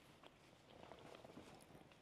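Near silence with faint chewing of a rice onigiri wrapped in nori: a few soft, irregular mouth clicks.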